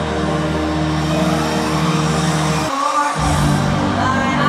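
Live stadium pop concert music heard from the stands, carried by heavy sustained bass notes. The bass cuts out for a moment about three-quarters of the way through, then comes back in.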